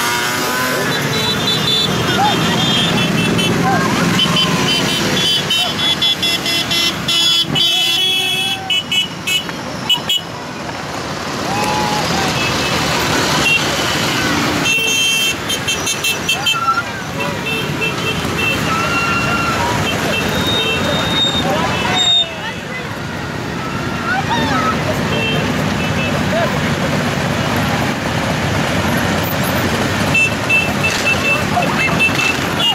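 A stream of motorcycles riding past at low speed, their engines running one after another, with horns tooting now and then.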